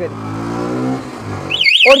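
Motorcycle engine running, rising slightly in pitch. About one and a half seconds in, an anti-theft alarm cuts in with a fast warbling electronic siren.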